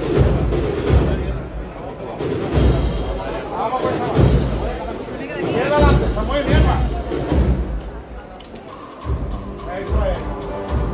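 Holy Week procession band music with deep, irregular bass drum beats and voices over it; several held notes from the band come in near the end.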